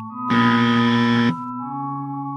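A harsh buzzer tone, a 'wrong' or error sound effect, lasting about a second and cutting off abruptly. It sounds over held notes of the background music.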